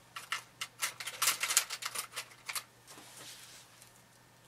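Cellophane plastic wrap crinkling over a clay sculpture: a quick run of crackles for about two and a half seconds, loudest in the middle, then a softer rustle.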